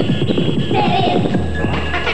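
A DJ scratching a record on a turntable over a beat, with rapid back-and-forth strokes; a low bass note comes in about one and a half seconds in.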